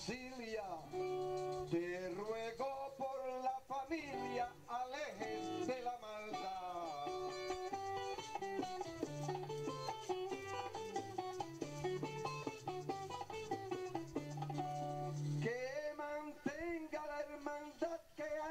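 Puerto Rican jíbaro music: trovadores' plucked-string accompaniment with a melody line and singing, played continuously with a brief dip near the end.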